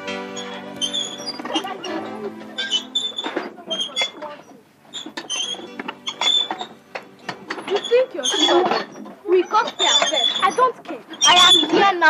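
Background music fading out over the first couple of seconds, then children at play shouting and squealing in short, high-pitched bursts.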